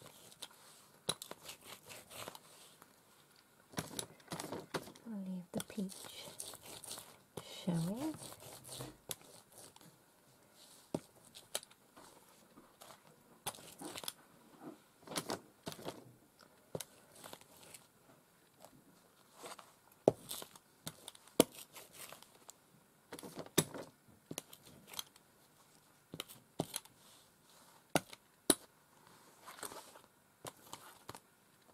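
A hand brayer rolling through tacky paint on a fabric panel, with crackly, tearing sticking sounds. The fabric crinkles as it is shifted, and scattered sharp clicks and taps come through, the loudest about 20 to 24 seconds in.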